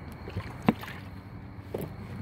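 Steady low background noise, with one short click a little after half a second in.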